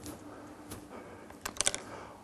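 A few light clicks against quiet room noise, with a quick cluster of three or four about a second and a half in.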